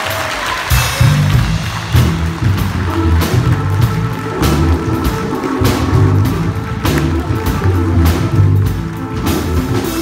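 Live gospel church band with keyboard and drum kit playing an upbeat instrumental groove with a steady beat and low bass notes, while the congregation claps along.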